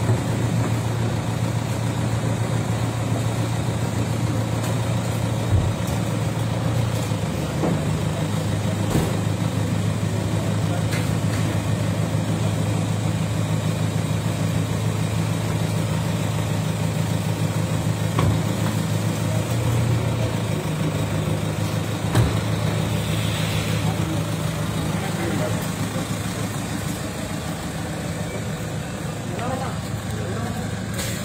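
A large SUV's engine idling steadily, with people talking around it and a few short thumps, likely car doors.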